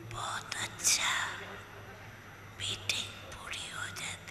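Faint, breathy voices speaking softly in short fragments, about a second in and again near the end, over a low steady hum.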